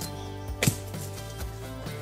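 Background music playing quietly, with one sharp knock about two-thirds of a second in.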